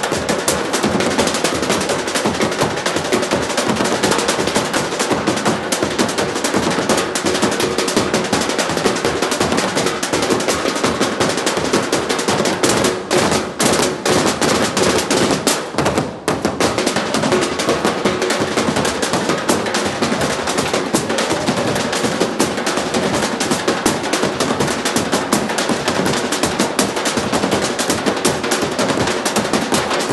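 A percussion ensemble drumming with sticks, a fast, dense rhythm of sharp hits, with two short breaks near the middle.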